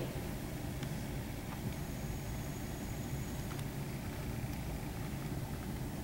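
Car engine running with a steady low hum, heard from inside the cabin, with a few faint ticks.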